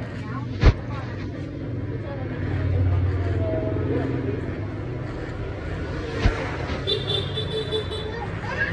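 Electric hair clipper buzzing steadily as it cuts short hair at the nape, louder for a moment a few seconds in. Two sharp clicks, one near the start and one after six seconds.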